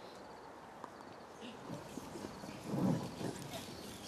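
Quiet hall room tone with a few soft knocks and shuffles from a seated congregation, and a brief louder low sound a little before the end.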